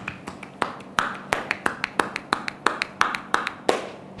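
A masseuse's hands patting and slapping a bare back in a quick, even rhythm, a few slower slaps and then about five sharp slaps a second: the closing tapotement of a massage.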